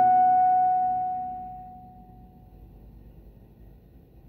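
Clarinet holding the song's final long note over a backing-track chord, the whole ending fading out over about two and a half seconds, leaving only faint low hiss.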